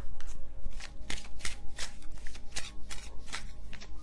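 A deck of tarot cards being shuffled by hand: a quick, even run of soft card slaps, about five a second.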